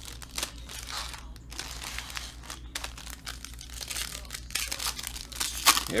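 Foil wrapper of a 2019 Topps Museum Collection baseball card pack crinkling and tearing as it is ripped open by hand, in irregular crackles that get louder near the end.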